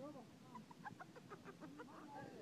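A young child's faint, high-pitched babbling: a quick string of short chirpy vocal sounds.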